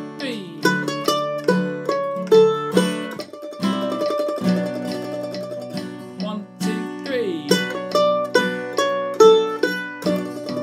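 Mandolin picking a quick single-note melody over an acoustic guitar strumming chords. The mandolin phrase comes round again near the end.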